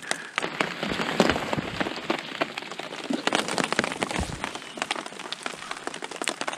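Steady rain falling on a Cuben fiber (Dyneema) tarp overhead, heard as a continuous hiss dotted with many separate drop hits.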